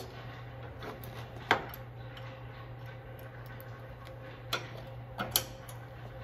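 Metal lockdown bar of an HZ-40 centrifugal barrel finishing machine being levered down into place and latched: one sharp click about a second and a half in, then a few lighter clicks near the end, over a steady low hum.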